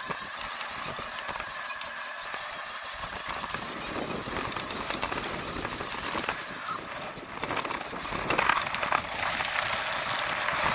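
Cyrusher Ranger fat-tyre eBike being ridden over a grassy field track, its tyres rolling and rumbling over the rough ground. The noise gets louder and rougher about eight seconds in.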